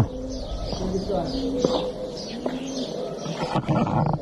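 Small birds chirping in quick, repeated, high falling notes, several a second, with lower dove cooing beneath.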